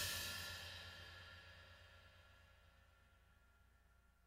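The last sound of a jazz piece for drums, tenor saxophone and trombone dying away, a cymbal ringing out and fading to near silence about a second and a half in.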